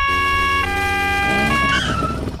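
Police scooter's two-tone siren, switching back and forth between a high and a low note a little more often than once a second, over a low steady hum; it fades out near the end.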